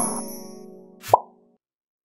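Logo sting: a bright musical chord with high chime-like tones decaying away, then a single short pop with a quick upward blip in pitch about a second in.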